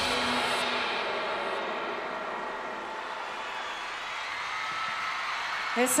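Live concert crowd cheering and clapping as the band's music stops, the noise slowly dying down. A woman's voice starts speaking into the microphone near the end.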